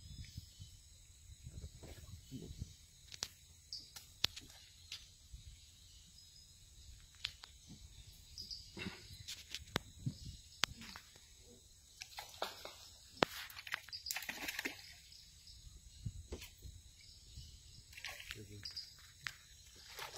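Quiet outdoor ambience with a low rumble and scattered faint clicks and knocks.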